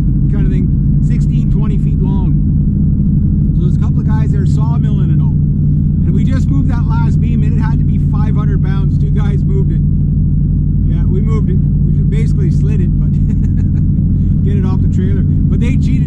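Steady engine and road drone of a small car cruising at constant speed, heard from inside the cabin, with a man talking over it.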